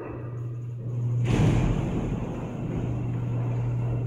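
Freight elevator's power door operator running with a steady low motor hum as the doors and mesh car gate close, with a louder rumble of the doors and gate travelling from about a second in.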